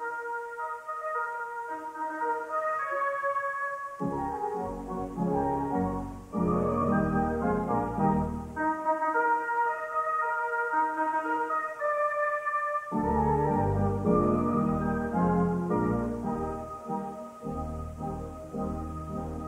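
Church organ playing sustained chords. A deep pedal bass comes in about four seconds in, drops out for a few seconds in the middle, then returns under the chords.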